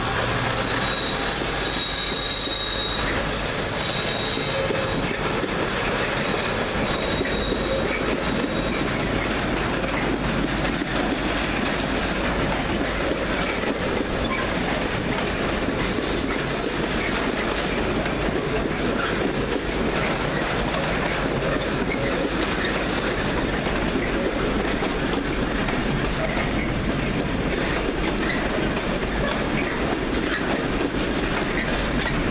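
A British Rail Class 66 diesel-electric locomotive passes close by, its engine heard briefly in the first few seconds. Its long train of intermodal container flat wagons then rolls by steadily, with wheels rumbling and clacking on the rails and short high-pitched wheel squeals near the start and again about halfway through.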